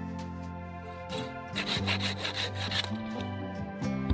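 Folding pruning saw cutting through a dead birch branch: a run of quick back-and-forth strokes from about a second and a half in to about three seconds in, over background music.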